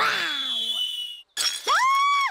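Cartoon sound effects for a batted ball: a falling whistle as the ball sails away, then a crash of breaking glass about one and a half seconds in, followed by a brief tone that rises and falls.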